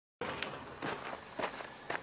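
Footsteps, four steps about half a second apart, over faint outdoor background noise.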